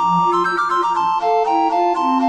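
Three recorders in synthesized score playback, playing a fast classical divertimento passage in F major: a quick melody of short notes in the upper two parts over a moving bass line.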